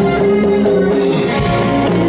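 Live rock band playing: electric guitars, bass guitar and drums, with a heavy low bass note coming in about one and a half seconds in.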